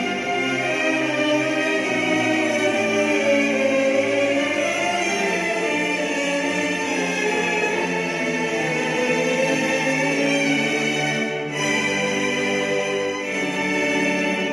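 Recorded orchestral music: slow, sustained string chords.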